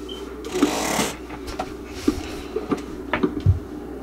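A basketball being dribbled on a hard court, a bounce every half second or so, over a steady low hum, with a short burst of hiss about half a second in.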